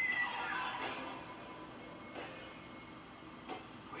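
Horror film trailer soundtrack played through computer speakers: music and sound effects, loudest in the first second, then quieter with a few sharp hits.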